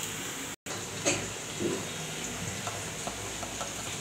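Ginger-garlic masala frying softly in oil in a pan, stirred with a metal slotted spoon that gives a few light scrapes and clicks against the pan. The sound cuts out completely for a moment under a second in.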